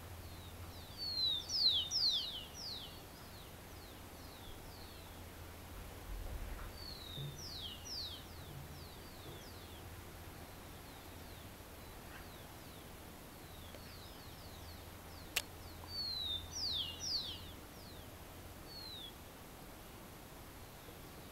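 A songbird singing in short bouts of quick, downward-sweeping whistled notes, three main phrases with pauses between, over a faint low steady hum; a single sharp click cuts in about fifteen seconds in.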